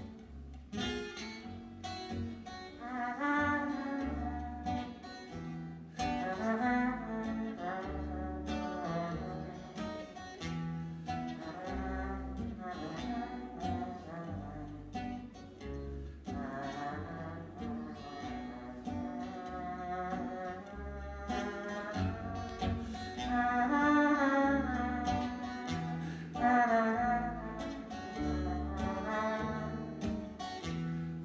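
A man singing a slow song to his own acoustic guitar, the voice holding long notes with vibrato over plucked bass notes.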